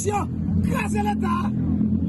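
A man talking in the street over a steady, low mechanical hum.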